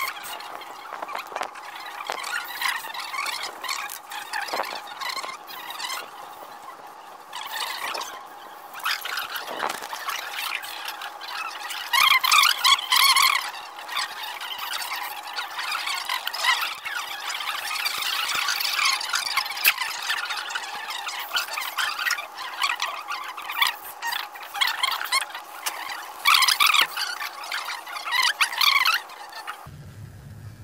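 LEGO Mindstorms NXT servo motors and plastic gear trains of a ball-sorting warehouse robot running, with high-pitched whirring and squeaking. It swells louder about twelve seconds in and again near the end.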